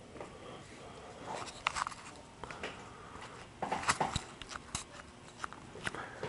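Scattered light clicks and knocks from handling two laptops as their lids are opened and they are switched on, in irregular clusters.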